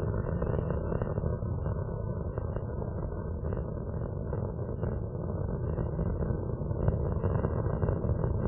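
Space Shuttle Atlantis's solid rocket boosters and main engines during ascent: a steady, crackling rocket rumble with no breaks.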